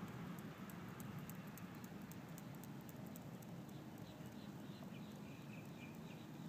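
Faint outdoor ambience: a low steady rumble with rapid, faint high ticking, and from about halfway a quick series of short, evenly spaced chirps from a small animal.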